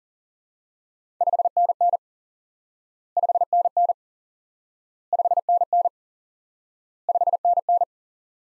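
Morse code beep tone sending "5NN" four times at 40 words per minute: each time five short dits, then dah-dit, dah-dit, with about two seconds between the groups.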